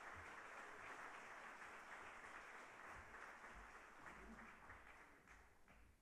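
Faint audience applause that fades away near the end.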